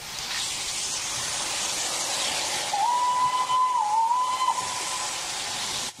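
Steam locomotive letting off a steady hiss of steam, with one whistle blast of about two seconds in the middle whose pitch dips briefly.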